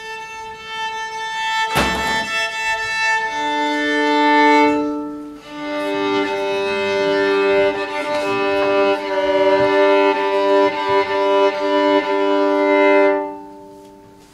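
Violin being tuned: long sustained bowed notes, mostly two open strings sounded together in fifths, in two long bow strokes with a short break about five seconds in, dying away near the end. A brief sharp knock sounds about two seconds in.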